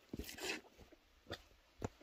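Faint footsteps of rubber boots on a muddy slope and flat stones: a brief scuff, then two separate knocks about half a second apart.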